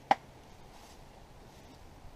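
A single sharp knock, as of a tool striking the clay-and-brick stove, just after the start.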